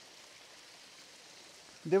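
Faint, steady wash of rain and of water running down a small stone-edged drainage channel (nala) that is flowing full after heavy rain. A man's voice starts speaking near the end.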